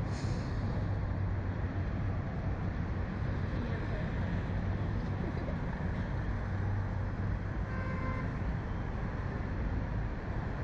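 Steady wind rush and rumble on the onboard camera's microphone as the Slingshot reverse-bungee capsule swings through the air.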